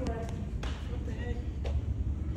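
Low background murmur of onlookers with faint talk, broken by three short, sharp taps or knocks about half a second and a second apart.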